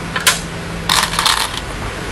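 Go stones being played onto a wooden Go board: a short click about a quarter second in, then a longer clatter of clicks about a second in.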